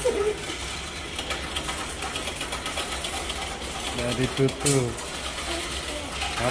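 Bank coin deposit machine taking in coins from its tray and counting them: a fast, even mechanical rattle of coins running through it. A voice speaks briefly about two thirds of the way in.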